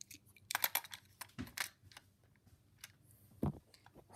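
Light clicks and rattles of small die-cast toy cars being set into a plastic starting gate on an orange toy race track, in a few quick clusters, then a single duller knock about three and a half seconds in.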